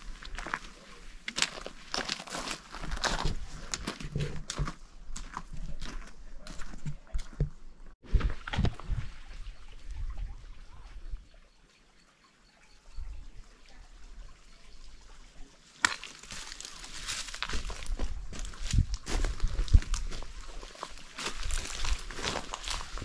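Footsteps crunching irregularly on a loose gravel and rock trail, with scattered clicks and scuffs; they ease off for a couple of seconds about halfway through, then pick up again.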